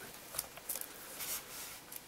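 Faint, short scratchy rustles of hands pressing and tightening a hook-and-loop (Velcro) strap around a camera lens barrel, a few scrapes spread through the moment.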